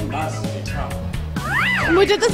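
Background music with a single cat meow near the end, rising then falling in pitch, used as a comic sound effect.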